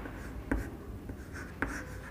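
Chalk writing on a blackboard: faint scratching strokes with two sharp taps of the chalk against the board, the louder one about half a second in and another near the end.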